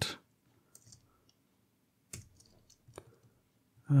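A handful of scattered computer keyboard keystrokes, four or so short clicks spread across the few seconds, the one about two seconds in the loudest, with near silence between them.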